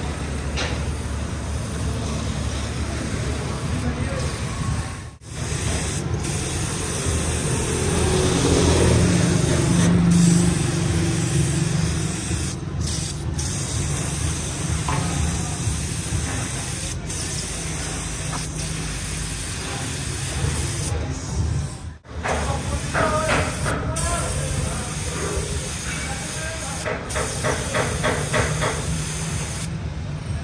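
Compressed-air paint spray gun spraying paint onto a steel excavator bucket: a steady hiss of air and atomised paint with a low rumble beneath it. The hiss cuts out briefly twice, about five seconds in and again past the twenty-second mark.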